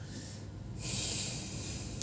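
A person breathing out sharply through the nose: one breathy hiss about a second long, starting just under a second in.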